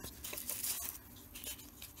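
Faint scratching and rustling of a ball-tipped embossing stylus rubbing and pressing small paper leaves into a thick foam pad, with a few light ticks.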